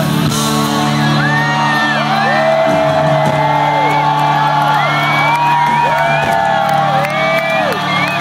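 Live rock band playing an instrumental passage: an electric guitar holds long notes that bend up and sink back down, several times over, above a sustained low chord and drums.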